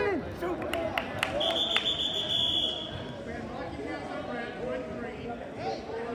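A single high, steady signal tone lasting just over a second, starting about a second and a half in, over gym crowd chatter, with a few sharp clicks just before it.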